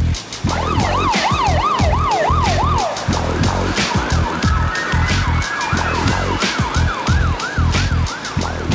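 A siren yelping, its pitch sweeping up and down about three times a second, over background music with a steady heavy beat. The siren drops away about three seconds in, and a fainter, higher yelp carries on to the end.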